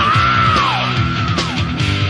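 Heavy metal band playing from a 1992 demo recording, with guitars, bass and drums. A high held note over the band slides down in pitch about half a second in, and again near the end.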